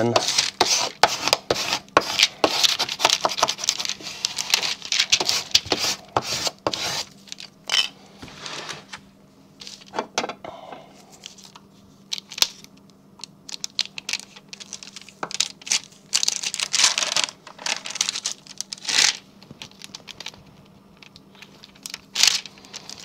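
Gloved hands rubbing and pressing transfer paper down over a vinyl stencil on a plastic disc: crinkling and scraping of the paper and its clear backing, dense for the first seven seconds or so, then in scattered short bursts.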